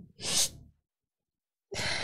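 A woman's tearful breathing while crying: one short breath about a third of a second in, then quiet, then another breathy sound near the end.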